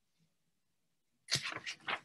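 Near silence, then a dog barking in a rapid run for about a second, starting a little past halfway.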